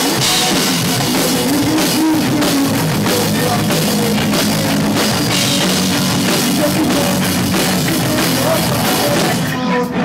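Local rock band playing live: electric guitars over a pounding drum kit, recorded loud and close on a small camera's microphone. The band breaks off briefly just before the end, then comes back in.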